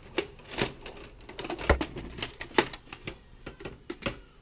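Irregular plastic clicks and clacks as a VHS cassette is pulled out of an open VCR's tape mechanism by hand, with one dull thump a little under two seconds in.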